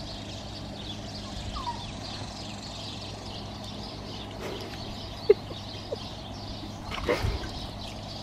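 Outdoor farmyard ambience over a steady low hum. A few short bird calls come through, one sharp short call about five seconds in is the loudest, and there is a rustle near the end.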